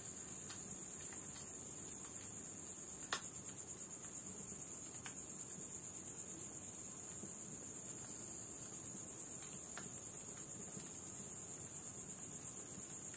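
A steady, high-pitched insect trill, typical of crickets at night, runs without a break. Over it come a few faint crackles from a wood fire, one sharper pop about three seconds in.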